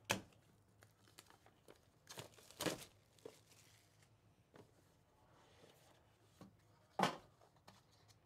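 Plastic shrink wrap being torn and peeled off a cardboard trading-card box, with crinkling. It comes as a few short, faint rustles spread apart, the sharpest about seven seconds in.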